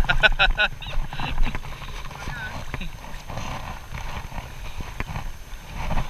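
Shallow water sloshing and splashing around the legs of a person wading, with scattered small clicks and splashes over a low rumble.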